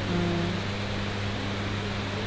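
Steady low electrical hum from a public-address system in a large hall, with faint background room noise.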